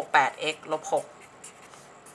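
Felt-tip marker squeaking and rubbing on paper as an equation is written out, under a voice speaking Thai in the first second.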